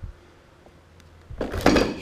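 Low room tone, then about a second and a half in, a short rustle and scrape as a cardboard box of new brake shoes is handled.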